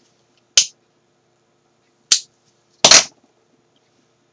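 A handheld lighter being struck to light a cigarillo: two sharp clicks about a second and a half apart, then a longer, louder strike near the end.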